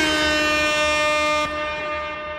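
Electronic music ending on one held synth note with a rich stack of overtones, steady and then slowly fading. There is a small click about one and a half seconds in, where its lowest pitch drops out.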